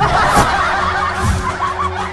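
A high-pitched snickering laugh over music with a steady beat.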